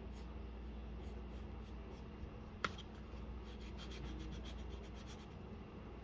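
Wooden pencil scratching across drawing paper in short sketching strokes, with a quick run of rapid strokes in the second half. A single sharp click stands out a little before the middle, over a low steady hum.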